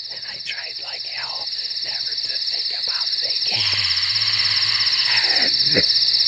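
Night ambience of crickets chirping in a fast, steady pulse, growing louder, with scattered croaking calls over it. A long sweeping sound rises and falls from about three and a half seconds in.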